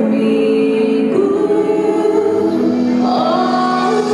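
Music: a choir singing slow, long-held notes in a religious song.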